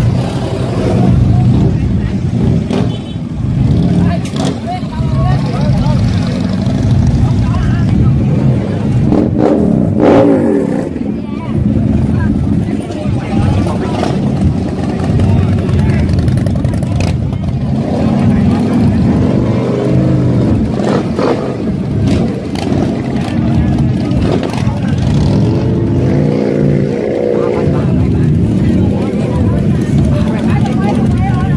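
Big custom motorcycle engines running loudly at idle and being revved up and down several times, with people talking in the crowd around them.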